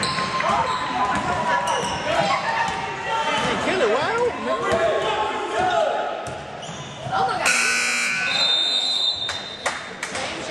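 Basketball game in a gymnasium: sneaker squeaks, a ball bouncing and players' voices, then a scoreboard buzzer sounds for about two seconds, starting about seven and a half seconds in, with the game clock at zero.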